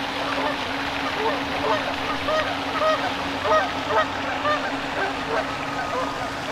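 Loud Canada geese honking, many short calls overlapping throughout, over the steady wash of a pond fountain and a low steady hum.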